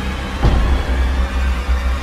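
Dark movie-score music under a film clip: a steady deep low drone, with a single low hit about half a second in.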